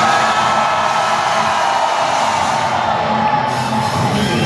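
Live heavy metal band heard from the crowd: one long held note slides slowly down in pitch over a wash of crowd noise and shouting, in a lull between the band's full hits.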